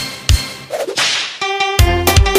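DJ transition effect in a soca mix: a whip-crack swoosh about a second in, bridging from the fading end of one track into the next, whose bass-heavy beat comes in near the end.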